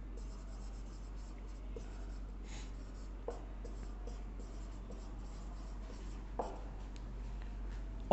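Marker pen writing on a whiteboard: faint scratching strokes with a few small taps, over a steady low hum.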